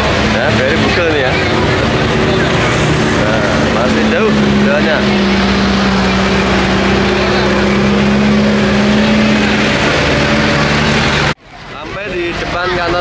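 Crowd voices and chatter in a street, with a steady low hum like a nearby motor vehicle's engine running for several seconds. The sound cuts off abruptly near the end.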